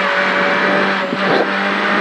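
Renault Clio R3C rally car's four-cylinder engine heard from inside the cockpit, running hard at fairly steady revs, with a brief change in the note just past a second in.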